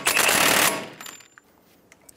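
Cordless impact wrench hammering as it snugs down a CV axle nut on the front hub. It stops under a second in.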